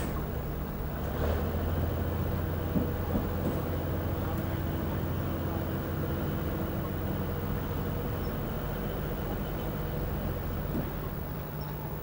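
An engine idling with a steady low drone, with a few faint metallic clicks.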